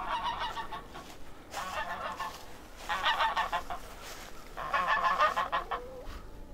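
Domestic goose honking in four bouts of rapid calls, each about a second long. The goose is worked up and calling in alarm over a dog.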